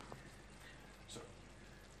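Faint, steady sizzle of mushrooms frying in a hot pan.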